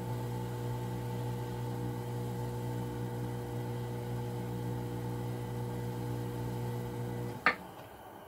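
Electric potter's wheel motor humming steadily while clay is thrown. The hum cuts off abruptly with a short sharp click near the end.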